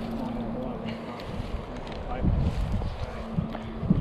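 Wind buffeting the microphone, gustier from about halfway through, over a steady low hum.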